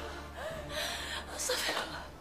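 A woman gasping and moaning in pain: a short wavering moan, then a few sharp breathy gasps.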